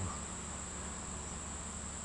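Steady, high-pitched chorus of insects, a continuous shrill trill with no break.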